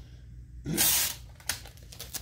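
Masking tape pulled from a desktop tape dispenser and torn off: one short hissing rip a little under a second in, then a light click.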